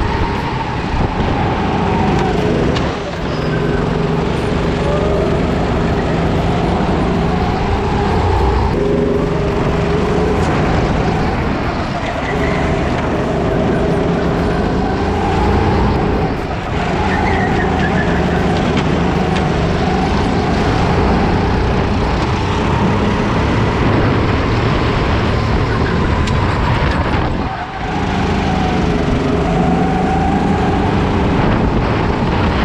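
Rental kart engine heard from onboard at racing speed, its pitch climbing along the straights and dropping briefly several times as the driver lifts for corners.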